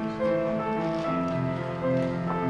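Upright piano played at a slow pace, several held notes ringing together as new ones are struck.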